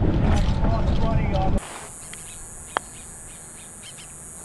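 Wind buffeting the microphone with faint voices, then after an abrupt cut a steady high-pitched insect drone and, about three-quarters of the way through, a single sharp click of a putter striking a golf ball.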